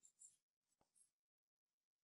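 Near silence, with the faint scratch and rub of a crochet hook drawing yarn through stitches and one faint click.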